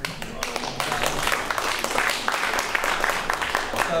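Audience applause: many hands clapping together in a dense, steady patter.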